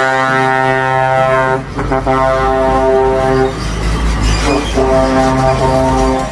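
Truck air horn sounding in long, loud, steady blasts, three in all, with short breaks about one and a half seconds in and between about three and a half and five seconds.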